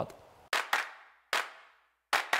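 Three sharp percussive hits, each with a short reverberant tail, open a pop song's backing track. The first two come close together about half a second in, and the third follows about half a second later.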